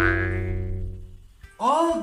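A single struck musical note used as a comic sound effect, ringing out and dying away over about a second and a half. A voice comes in near the end.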